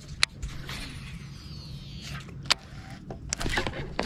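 Cast with a baitcasting reel: a sharp click, then the spool's faint high whirr falling in pitch as line pays out, and another sharp click a moment later. A steady low hum runs underneath.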